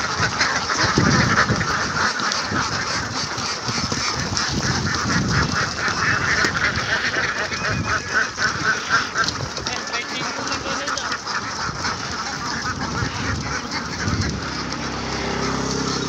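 A large flock of domestic ducks quacking continuously, many birds calling over one another in a steady, dense chatter.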